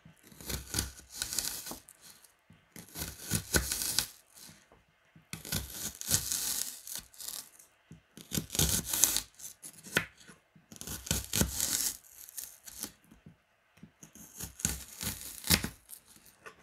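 Kitchen knife slicing a peeled onion into thin half-rings on a plastic cutting board: crisp crunching through the onion layers. It comes in about six bursts of a second or two each, with short pauses between them.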